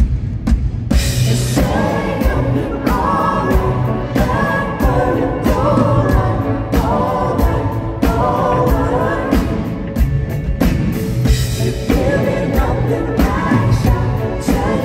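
Live pop-rock band playing: a male lead voice sings phrases over electric guitar, bass, keys and a steady drum beat.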